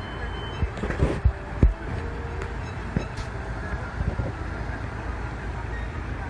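City street noise: a steady low rumble of traffic, broken by several sharp knocks about one to two seconds in and a few more later.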